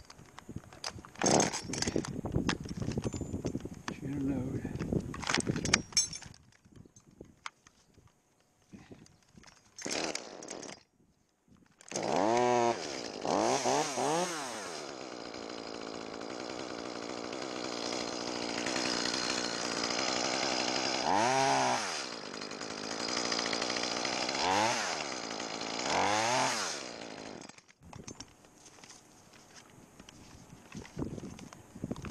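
Chainsaw starting about twelve seconds in, revved several times and run for about fifteen seconds, cutting alder wood, then cut off abruptly near the end. Before it, scattered knocks and clatter.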